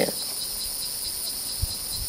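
Steady high-pitched chorus of insects droning without a break, with a soft low thump near the end.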